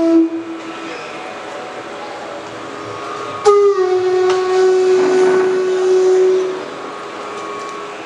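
Bansuri (bamboo transverse flute) playing long held single notes into a microphone during a sound check. A held note trails off in the first second. About three and a half seconds in, another note starts, dips slightly in pitch and is held steady for about three seconds.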